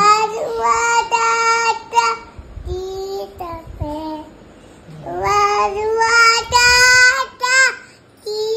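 A toddler boy singing: two loud phrases of long, drawn-out held notes, with a softer, lower passage between them.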